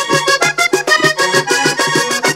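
Button accordion playing an instrumental vallenato passage of quickly changing notes, with percussion striking a steady beat underneath.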